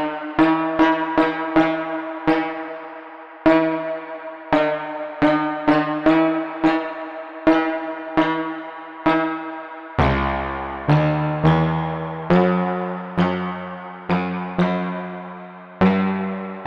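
Nebula Clouds Synthesizer in Reaktor playing a run of short notes, each starting sharply and dying away, a little under two a second. About ten seconds in, the line drops to lower notes with a deep bass underneath and slows slightly.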